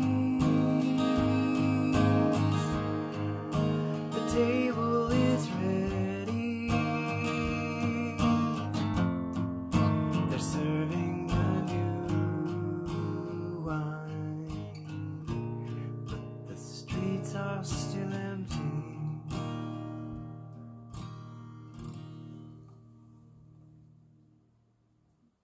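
Acoustic guitar strummed and picked through the closing chords of a song, the playing thinning out and fading steadily to a last ringing chord near the end.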